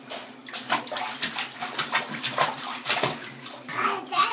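Bathwater splashing and sloshing in a tub as a toddler's hands play in it, a quick irregular run of small splashes.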